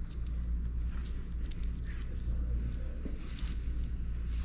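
Steady low rumble of background noise with a few faint, light metallic clicks from a diamond-set link bracelet moving on the wrist.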